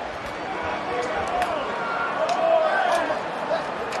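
Excited shouting of players celebrating, with several sharp hand slaps from high-fives, over steady stadium background noise.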